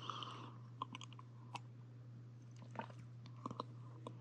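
Faint gulps and small wet clicks of swallowing as someone drinks water from a glass, over a steady low hum.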